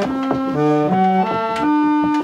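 Antique Packard reed organ playing a quick run of sustained chords, the chord changing about every third of a second. Extra stops are drawn beyond the single cello stop, giving a fuller, bright reedy tone.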